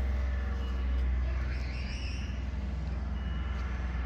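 A vehicle engine running steadily outdoors, a low rumble with faint steady higher tones over it.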